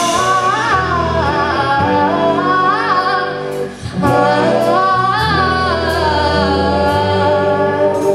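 A woman singing lead over a live rock band, with drum kit and electric bass. The music drops out briefly a little under four seconds in, then comes back.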